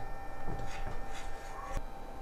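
A knife and cake slice being handled on a plate: a few faint scrapes as a slice of the loaf cake is cut free, and a light click near the end.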